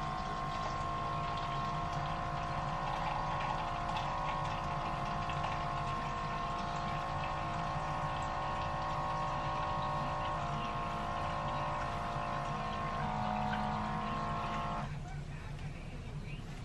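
A steady drone of several held tones, shifting slightly in pitch about 10 and 13 seconds in, then cutting off suddenly about 15 seconds in.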